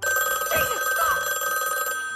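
A telephone ringing with one long, steady ring.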